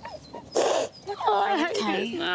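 A young woman crying: a sharp, noisy gasp of breath about half a second in, then wavering, high-pitched sobs.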